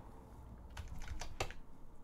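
A few light computer keyboard key clicks in the second half, over faint room tone.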